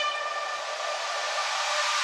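A beatless breakdown in an electronic dance mix: a held brass note fades while a wash of noise builds slowly louder toward the next drop.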